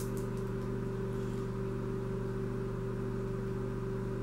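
A steady low machine hum made of several held tones, unchanging throughout, with a few faint soft ticks near the start.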